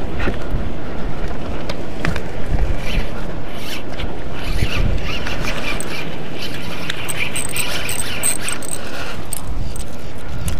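Wind buffeting an open-air microphone, with a spinning fishing reel being cranked as line is wound in; a run of quick faint ticks comes near the end.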